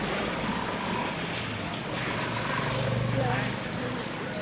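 Street traffic noise with a motor vehicle's engine humming low as it passes close by, growing louder to a peak about three seconds in and then easing off.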